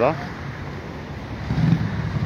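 Street traffic noise, with a passing road vehicle's engine coming in about one and a half seconds in, a low steady engine note that grows louder.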